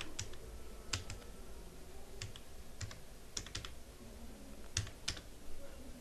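Slow typing on a computer keyboard: about a dozen separate, faint keystrokes at uneven intervals, as the word "successfully" is typed out letter by letter.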